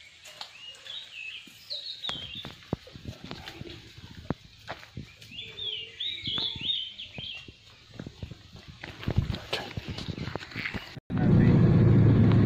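Birds calling in two short bouts of chirps, over a scatter of clicks and crackles. About eleven seconds in the sound cuts abruptly to a loud, steady, low rumble.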